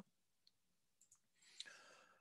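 Near silence, broken by faint computer mouse clicks: one right at the start and another about one and a half seconds in, as the browser's back button is clicked.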